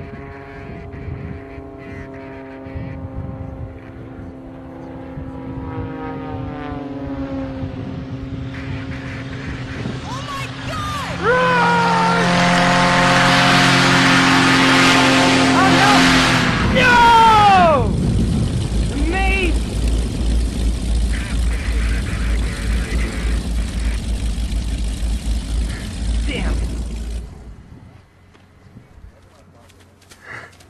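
Propeller aerobatic plane's engine droning, its pitch falling as it passes. About eleven seconds in, a loud rush of noise takes over, with people's shouts rising above it several times, then a heavy low rumble that cuts off abruptly near the end.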